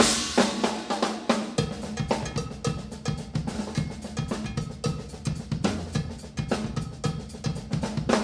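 Pearl drum kit played solo: a fast, busy pattern of sharp hits on drums and cymbals, with the low drums coming in about a second and a half in.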